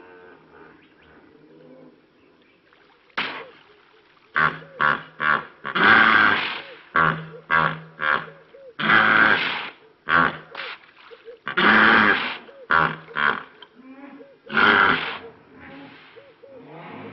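African hippopotamus calling: a series of deep grunts starting about three seconds in, broken by four long, loud honks with short grunts between them.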